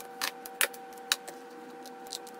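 Small hard masking objects knocking against the painted panel as they are lifted and set down by hand: three short clicks about half a second apart, over a steady hum.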